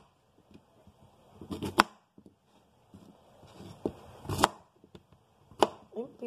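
A kitchen knife chopping peeled cassava on a plastic cutting board: three sharp knocks of the blade striking the board, spaced a second or two apart. A short scrape of cutting comes before the first two.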